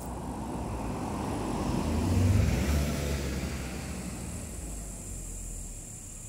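A motor vehicle passing by, its rumble and tyre noise swelling to a peak a little past two seconds in and then fading away.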